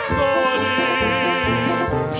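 A man singing one long held note with vibrato into a microphone, over a band accompaniment with brass.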